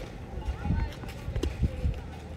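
Outdoor court ambience: faint distant voices with a few dull low thuds.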